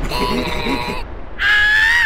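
Cartoon character voices: two long, high-pitched cries. The second starts about a second and a half in and is higher and louder.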